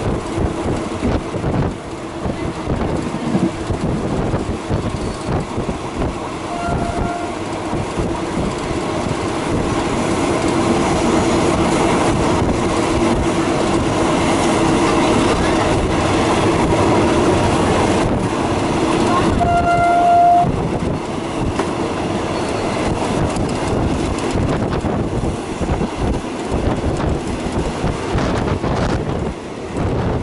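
Passenger train running along the track, heard from inside the carriage at an open window: a steady rumble and wheel noise. Two short horn blasts sound over it, a faint one about seven seconds in and a louder one about twenty seconds in.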